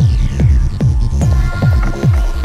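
Electronic dance music with a steady kick drum, about five beats every two seconds, and falling synth sweeps above it.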